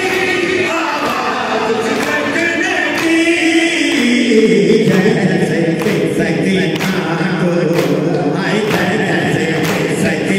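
Unaccompanied Urdu noha sung by a male reciter and a crowd of men together in long held notes, the melody dropping to a lower note about four seconds in. Sharp slaps come about once a second, in time with it, from hands beating on chests (matam).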